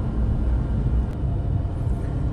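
Road and tyre noise inside the cabin of a VinFast VF3 electric mini car driving along an expressway: a steady low rumble with no engine note.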